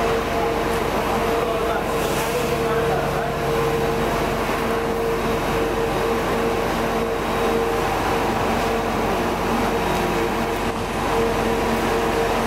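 Large tour coach idling at the kerb, a steady running hum with a constant droning tone, mixed with muffled voices.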